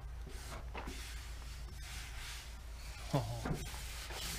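Plastic squeegee rubbing transfer tape down over vinyl lettering on a painted steel trailer body, in faint scraping strokes. A short murmur of a voice comes about three seconds in.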